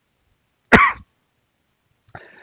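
A man coughs once, a single short cough about two-thirds of a second in.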